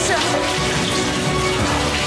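Water sloshing and bubbling in a flooded tank, with background music underneath.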